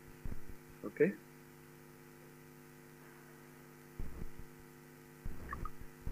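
Steady electrical mains hum from the lecture-hall recording or amplification system, with a few soft low knocks now and then.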